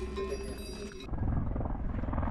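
A lingering bell-like ringing tone that cuts off abruptly about a second in, giving way to a low, fast-pulsing rumble.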